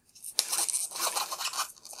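Irregular scratchy rustling and scraping, mostly high-pitched and uneven.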